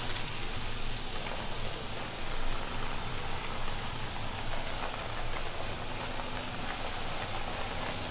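Hot-water extraction carpet-cleaning wand pulled across carpet: a steady hiss and rush of suction drawing water and air up through the wand, with a faint low hum underneath.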